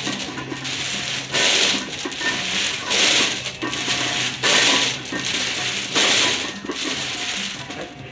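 Heavy steel training chains hanging from a barbell's sleeves clanking and jingling as they lift off the floor and pile back down with each fast bench-press rep, a loud metallic rattle about every second and a half.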